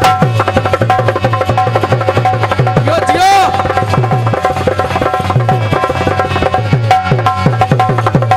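Dholak barrel drum played in a quick, steady rhythm, with deep bass strokes that drop in pitch, over a sustained harmonium drone.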